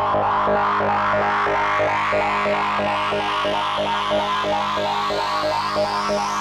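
DIY modular synthesizer playing a sequenced demo pattern of quick repeating notes, about four a second, over a steady low drone. A bright sweep rises steadily in pitch throughout.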